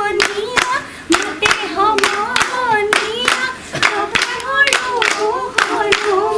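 Women singing a Bihu song together, unaccompanied, keeping time with steady hand claps, about two claps a second.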